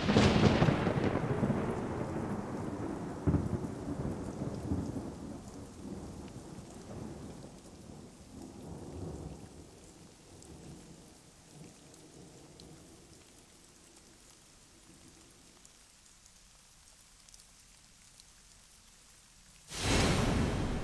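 A thunderclap breaks suddenly, then rolls and rumbles away over about ten seconds, swelling again twice along the way, over falling rain. Near the end only a faint rain hiss remains.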